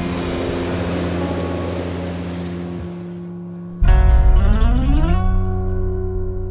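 Dramatic film score: sustained low tones under a hissing swell that fades over about three seconds. Near four seconds a heavy low hit brings in a cluster of tones gliding upward, which settle into a held chord.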